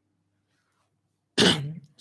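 A man coughing once, a short loud burst about a second and a half in, after a near-silent stretch.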